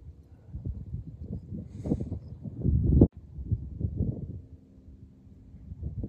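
Wind buffeting a phone's microphone: an uneven low rumble that swells and falls, breaking off abruptly about three seconds in. A faint steady low hum sits under it near the end.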